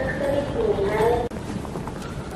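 A person's voice for about a second, cut off suddenly, then footsteps on a hard floor.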